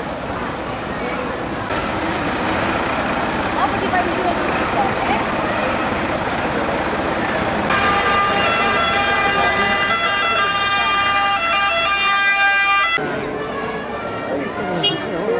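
Parade vehicles passing slowly with engine noise and crowd chatter. From about eight seconds in, a vehicle siren sounds in stepped tones for about five seconds and cuts off suddenly.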